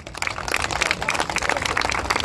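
Audience applauding, the clapping rising within the first half second and then holding steady.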